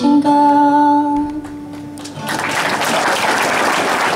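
A woman's voice holds the song's final sung note for about a second and a half, fading away. Audience applause then breaks out a little over two seconds in and carries on.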